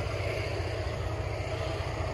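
Heavy diesel engine running steadily at low speed, a deep, evenly pulsing rumble.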